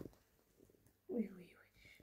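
Near silence, then a woman's soft, short exclamation ("wi, wi") a little after a second in, falling in pitch.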